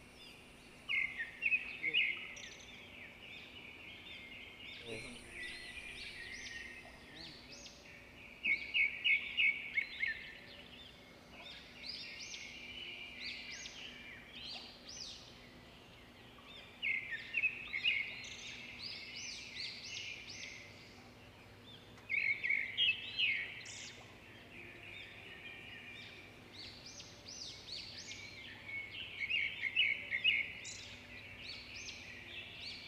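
A bird calling in phrases of rapid, high, chattering notes, repeated every few seconds, over a faint steady low hum.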